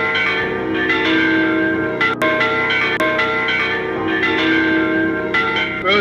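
Church bells ringing, several bells sounding together so their tones overlap, with fresh strikes every second or so.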